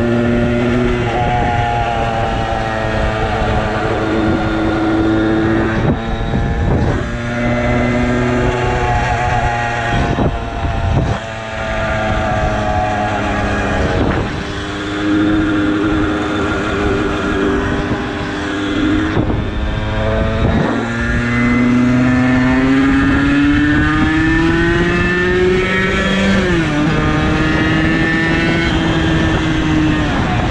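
50cc moped engine running under way, its pitch shifting with the throttle and dipping briefly several times. Near the end the note climbs steadily for a few seconds, then drops sharply, as at a gear change.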